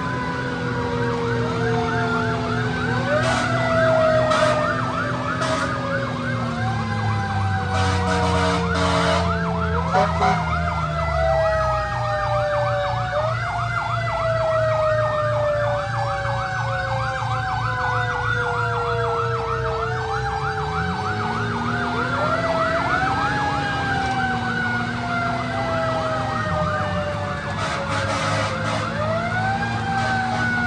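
Fire engine's mechanical Q siren being wound up again and again, its pitch rising quickly and then falling slowly each time, every few seconds. A faster-wavering electronic siren sounds over it in stretches, with the truck's engine running underneath.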